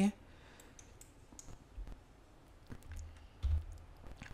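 Scattered clicks of a computer mouse and keyboard over faint room noise, with a soft low thump about three and a half seconds in.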